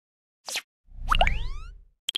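Animated logo sting sound effects: a short swish about half a second in, then the loudest part, a deep rumble under several rising, gliding tones, fading out within about a second.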